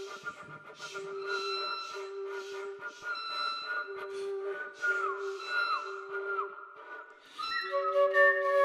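Contemporary chamber music for voices, flute and violin: a soprano hums repeated held 'm' notes while a mezzo-soprano whispers a string of 'shee' noises, and a flute plays soft, thin whistle tones that dip in three falling slides past the middle. A faint bowed violin sound sits underneath.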